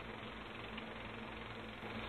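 Quiet room tone: a steady low electrical hum under a faint even hiss.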